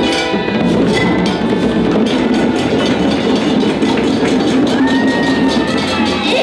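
Violins playing as a group over busy, steady hand-drumming on djembes.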